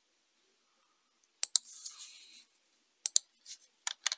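Computer mouse clicks: a quick pair about a second and a half in, followed by a short soft rustle, then several more single clicks in the last second.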